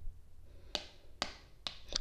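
Oracle cards being handled on a wooden tabletop: about four light taps as a card is drawn and laid among the spread.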